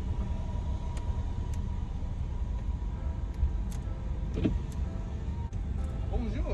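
A car's engine and rolling noise, heard from inside the cabin as a steady low rumble while the car pulls forward at low speed, with a few faint clicks.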